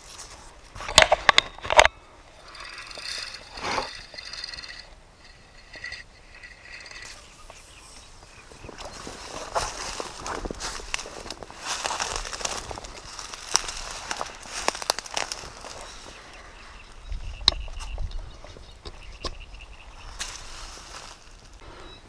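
Close rustling and crackling of dry reed stems and handling noises as a fishing rod and line are handled, with a few sharp clicks about a second in.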